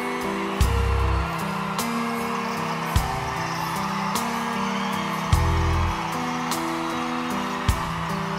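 Live band playing the slow instrumental opening of a ballad: sustained chords that change every second or so, with a deep hit about every two and a half seconds.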